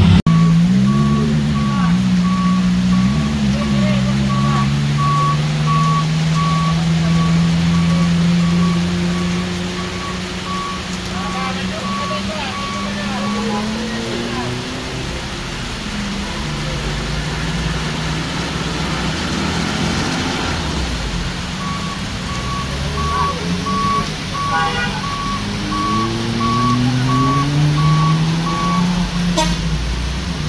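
A vehicle's reversing alarm sounding a steady train of single-pitch beeps, stopping about halfway through and starting again a few seconds later, over a truck engine labouring up a steep grade, its pitch rising slowly as it pulls.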